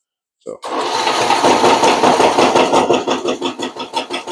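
Homemade drill-powered worm-castings sifter starting up: the electric drill drives the spring-mounted wooden screen trays into a fast, even thumping that shakes the screens, a bit noisy. The thumping slows and fades near the end as it is switched off.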